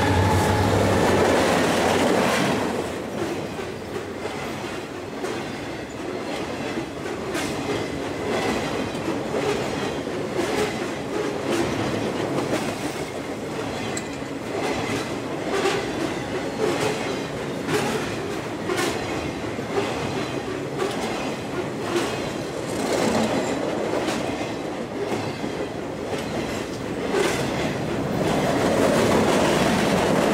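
A train's railroad cars rolling past, with steady rumbling and a rapid run of clicks from wheels over rail joints. It is louder in the first couple of seconds and again near the end.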